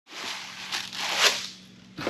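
Cardboard box and its packing being rummaged through by hand: a rustling, crinkling noise with two louder scrapes, the second the loudest, before it dies down near the end.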